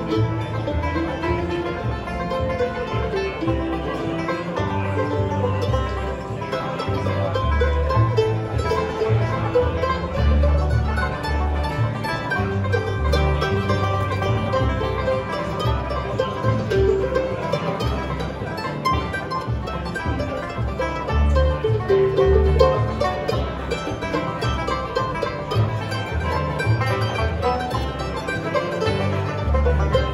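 Bluegrass band playing an instrumental passage: five-string banjo, mandolin and acoustic guitar picking over plucked upright bass, with no singing.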